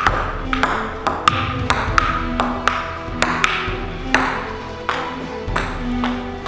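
Table tennis ball clicking off paddles and the table in a quick rally, two or three sharp ticks a second, over background music.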